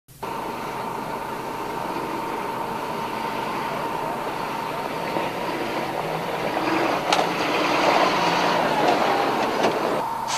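Heavy wheeled military vehicles driving past, a steady run of diesel engine and tyre noise that grows louder in the second half, with a thin steady high tone running through it. There is a sharp click about seven seconds in.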